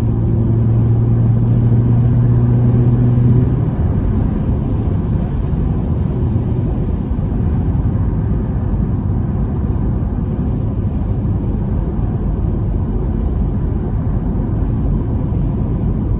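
Steady road and tyre noise inside a car cruising at highway speed. A steady low hum runs over the first three and a half seconds, then stops.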